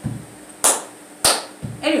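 Two sharp hand claps, about two-thirds of a second apart, in a rhythm of claps that runs on from just before.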